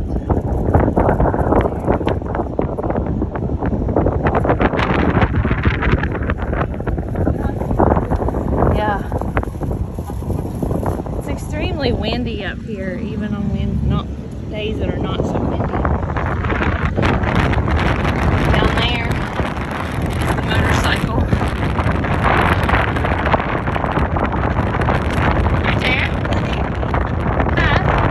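Wind buffeting the phone's microphone on a high open gallery, a steady rushing rumble, with indistinct voices talking under it.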